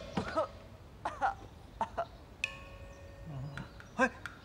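A young man's short coughs and grunts of pain, about five of them in the first two seconds, as he lies on the ground after being thrown. About halfway through there is a sharp click followed by a faint steady ringing tone.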